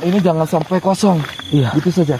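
Men's voices shouting in short, rapid, repeated cries, several a second, with the pitch swooping up and down.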